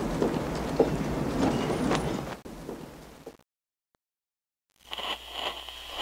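Wind rumbling and gusting, fading out to complete silence a little past three seconds in. A faint low hum with a thin steady high tone comes in about a second and a half later.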